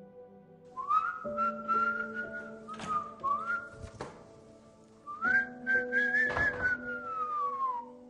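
Whistling over steady background music: four whistled notes that each slide up into pitch, the last one long and falling slowly near the end. A few short knocks sound among them.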